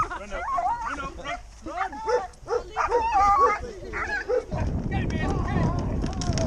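Malinois x German Shepherd barking repeatedly in short, rising and falling calls. From about four and a half seconds in, a steady low rumble of wind on the microphone takes over.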